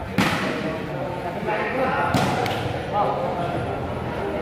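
A volleyball struck hard by hand: one sharp hit just after the start, like a serve, then two quick hits about two seconds later as the ball is played on the other side, ringing in a large hall over crowd chatter.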